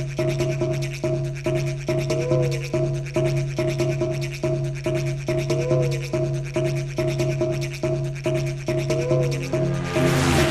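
Electronic dance music from a rave DJ set: a steady pulsing beat over held bass and synth tones, with a short synth figure repeating about every three and a half seconds. A crash-like burst of noise comes in right at the end.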